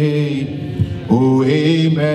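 A man singing a slow worship chorus into a microphone, holding long, drawn-out notes. The line breaks off about half a second in, and the next note starts with an upward slide just after one second.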